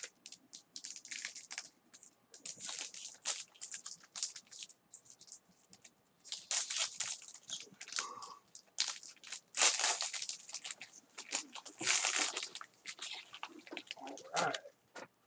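Gold foil trading-card pack wrapper being crinkled and torn open by hand: irregular crackling crinkles, with louder bursts around the middle and near the end.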